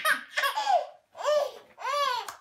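Toddler laughing and squealing in short, high-pitched bursts, about three in two seconds.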